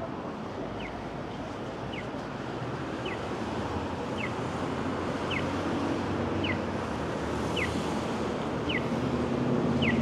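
Accessible pedestrian crossing signal sounding its walk chirp: a short, falling electronic chirp about once a second, over steady street traffic noise.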